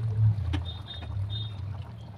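A steady low rumble from the stovetop under a pan of simmering curry, with a single click about half a second in and two brief pairs of high chime tones soon after, from a like-and-subscribe button animation.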